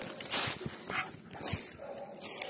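A hunting dog barking in short, sharp bursts while on the trail of a wounded wild boar.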